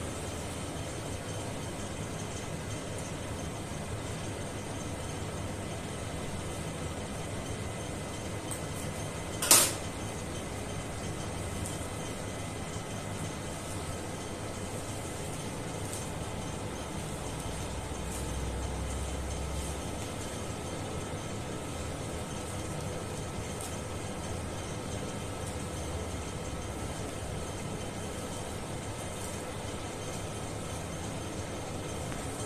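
Steady room hum and hiss, with faint ticks of surgical instruments being handled during suturing and one sharp click about ten seconds in.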